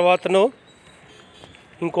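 Speech only: a voice says a couple of short syllables right at the start and begins another word near the end, with faint background noise between.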